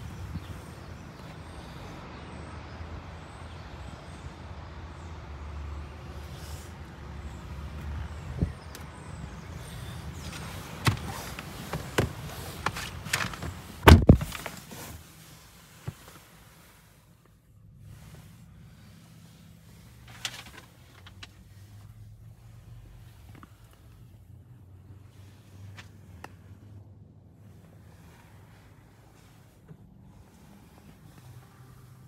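A low rumble with a few clicks and knocks, ending about halfway through in the heavy thunk of a Land Rover Defender's door being shut. After it the sound goes much quieter, leaving a faint low hum and the odd small click inside the closed cabin.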